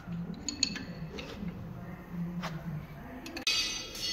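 A few light metallic clinks, two close together about half a second in and another a couple of seconds later, as an aluminium valve cover and engine parts are handled, over a low murmur. The background changes abruptly shortly before the end.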